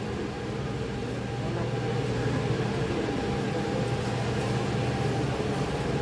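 Steady mechanical hum of a supermarket's refrigerated display cases and ventilation, several fixed tones over a low even noise.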